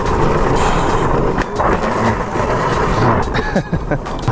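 Razor drift trike rolling and sliding over asphalt: a loud, continuous rumble and scrape of its wheels on the pavement, with a few small knocks.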